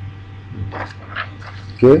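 Speech only: faint voices, then a man's loud, short "okay" near the end.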